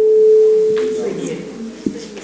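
A single steady pure tone, held for about a second and then fading out.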